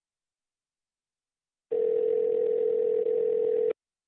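Telephone call-progress tone heard over the line while a call is dialing: one steady mid-pitched tone about two seconds long, starting a little under two seconds in and stopping abruptly.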